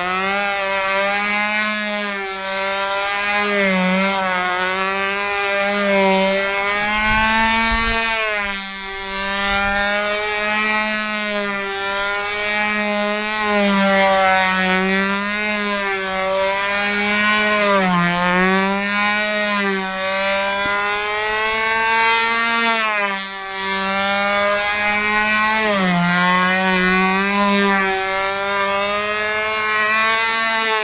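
Small two-stroke glow engine of a control-line model airplane running at full throttle in flight. Its pitch rises and falls over and over as the plane circles and manoeuvres, with brief dips about a third of the way in and again about three quarters of the way in.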